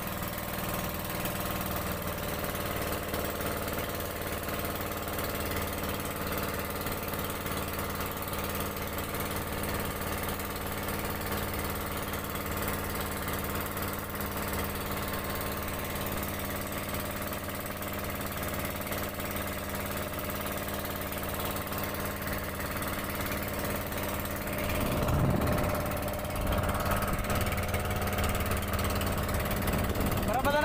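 Outrigger fishing boat's engine running steadily at a constant pace, its note changing briefly near the end.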